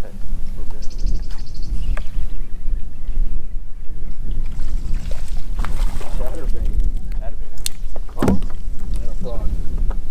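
Wind buffeting the microphone in a steady low rumble, with water lapping against the hull of a bass boat. Muffled voices come in during the second half.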